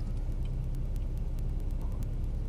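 Steady low rumble of a car's engine and road noise heard from inside the cabin while driving, with a few faint ticks.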